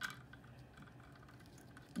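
Faint clicking of Lego plastic parts being handled, with one sharper click right at the start, as a hay-bale brick is let down on a small Lego chain from the barn's winch.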